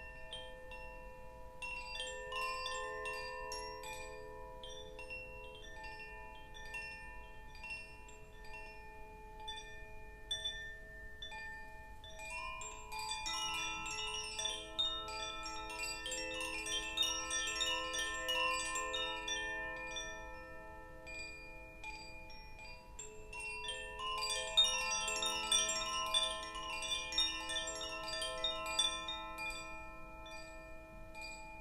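Hand-held bamboo tube wind chime being swayed gently: bright tinkling tones that ring on and overlap. It swells louder twice, around the middle and again near the end.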